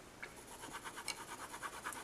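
Colored pencil scratching on Bristol paper in rapid, even strokes, about ten a second, as a swatch is shaded over with gray. Faint.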